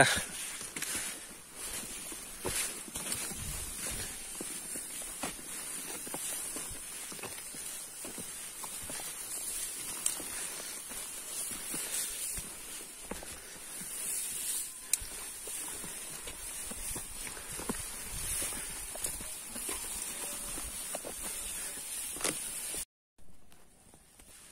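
Footsteps on a dirt mountain trail, irregular scuffs and crunches of walking, over a steady high hiss. The sound cuts out abruptly about a second before the end.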